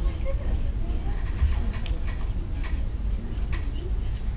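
Hall room noise: a steady low rumble with faint murmuring voices in the background and a few light clicks.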